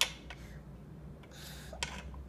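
A metal fork clicking against a small cup of food: a sharp click at the start and a softer one near the end, over quiet room tone.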